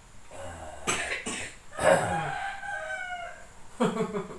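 A man coughing: sharp coughs about a second in, just before two seconds and again near the end, a sign of his cough and cold. Between the coughs comes a long drawn-out call that holds a steady pitch for about a second and a half.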